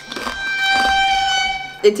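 A single steady high-pitched tone, held for about a second and a half and then cut off.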